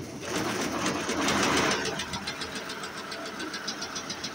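Multi-needle quilting machine running, stitching covering fabric and insulation batting together: louder for the first two seconds or so, then settling into a steady, fast, even clatter.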